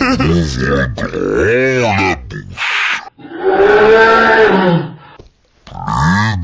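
Cartoon pig snorts slowed right down into deep, drawn-out grunts. Each one rises and falls in pitch over about a second, with a longer groaning stretch after the middle and a short silent gap near the end.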